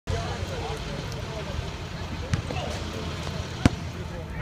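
Diesel school bus engines idling with a steady low rumble, with voices chattering in the background. Two sharp knocks come through, the louder one near the end.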